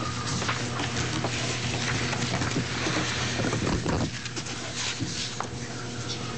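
Rustling and small clicks of handling at a podium, with a few heavier low thumps about three and a half seconds in, over a steady low electrical hum.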